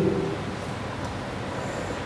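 A pause in a talk: the hall's steady background noise through the stage microphone, with the last of the speaker's voice dying away in the first moment.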